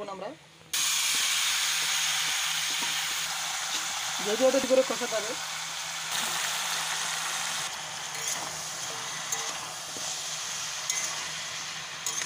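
Marinated chicken pieces with potatoes, onions and tomatoes dropped into hot oil in an aluminium kadai, sizzling loudly the moment they hit, then frying with a steady sizzle that slowly eases off.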